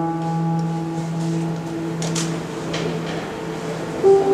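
Piano sound from a Korg stage keyboard: a low chord held down, its notes ringing on steadily and slowly dying away.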